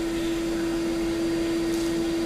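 Bee vacuum running steadily: a vacuum motor drawing air and bees through a corrugated hose, a steady rush of air with a constant hum at one pitch.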